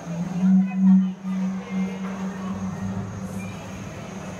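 A life-size dinosaur display's recorded call played through its speaker: one low, drawn-out call, loudest in its first second, with a deeper tone joining about two and a half seconds in before it fades.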